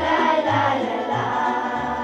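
Children's choir singing a song together, with low bass notes beneath falling about twice a second.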